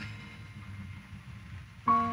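Instrumental keyboard music: a held chord fades away, then a new chord is struck just before the end.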